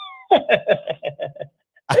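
A man laughing: a high squeal that slides in pitch, then a quick run of short high-pitched 'ha' bursts that fades out after about a second and a half.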